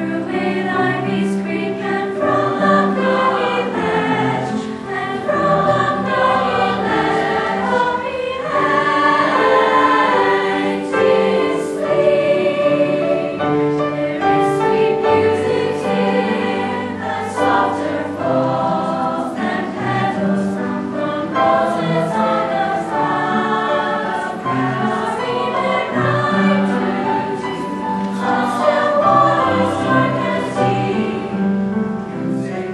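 Youth choir of boys and girls singing a piece in several parts, the voices moving together through held chords.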